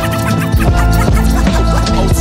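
Boom bap hip hop beat with DJ turntable scratching cut over the drums and looped sample.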